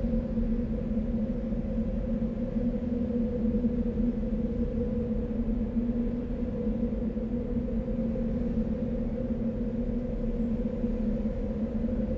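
Background score: a low sustained drone of two held tones over a steady low rumble, unchanging throughout.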